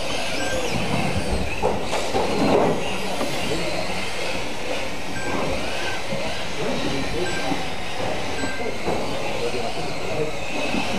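Electric mini RC cars racing on an indoor carpet track: a steady mix of small electric motors whining, with rising and falling pitches as they accelerate and brake, and tyre noise on the carpet.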